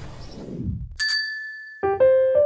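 A fading noisy swish, then a single bright chime struck about a second in that rings on as a high steady tone and dies away. A keyboard tune starts just before the end.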